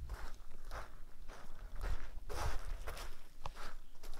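Footsteps on gravelly dirt, a steady walking pace of about two steps a second, over a low rumble.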